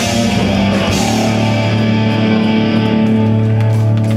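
Live rock band playing loudly through a PA: distorted guitars, bass and drums. About a second in a low chord is held while the cymbal wash fades.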